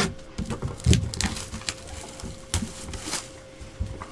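Clear plastic shrink wrap crinkling and rustling as it is pulled off a sealed trading-card box, with irregular light taps and scrapes of the cardboard box being handled.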